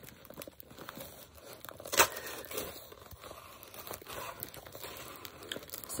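Scissors cutting and prying into a taped cardboard box, with irregular scraping, tearing and crinkling and a sharp snap about two seconds in.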